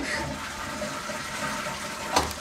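Toilet flushing with the lid closed: a steady rush of water.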